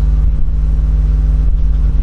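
A steady, loud low hum that does not change, the constant background drone that also runs under the speech.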